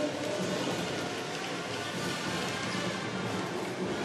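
Music playing over an arena's sound system, heard over the steady noise of a large crowd during a stoppage in a basketball game.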